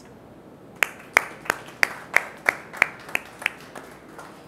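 Hand clapping: about ten single, evenly spaced claps at roughly three a second, starting about a second in.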